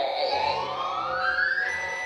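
A single electronic musical tone sliding smoothly upward in pitch for about a second and a half, then holding on one high note.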